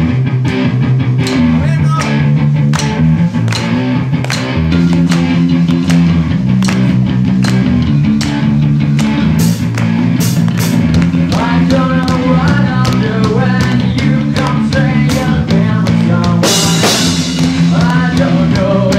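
Live rock band playing: electric guitar over a drum kit, with regular drum hits and a cymbal wash near the end.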